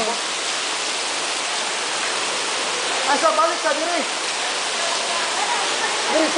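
Spring water spilling from a limestone overhang into a pool, a steady splashing rush. Voices are heard briefly about halfway through.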